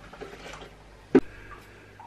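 Quiet kitchen room tone with a single short, sharp knock a little over a second in.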